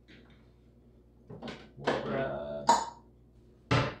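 A man's brief wordless vocal sound, a murmur, in the middle. It is followed by a sharp click and then a louder knock near the end as a bowl is taken from the kitchen counter.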